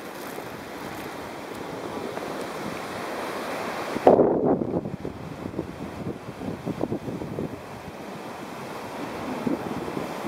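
Ocean surf on a sandy beach: a steady rush of breaking waves, with wind on the microphone. A sudden louder gust of wind buffeting comes about four seconds in.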